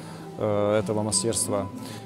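A man's voice speaking over soft background music with steady low tones.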